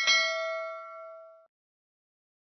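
Notification-bell 'ding' sound effect: a single struck chime with several ringing tones that fades out within about a second and a half.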